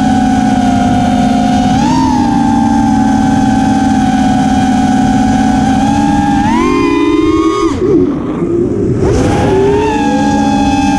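TBS Oblivion FPV quadcopter's brushless motors and propellers, a steady whine recorded on the onboard camera. The pitch rises slightly about two seconds in and climbs higher around seven seconds in, then the whine drops away and sputters for about a second as the throttle is chopped, and it comes back to a steady whine near the end.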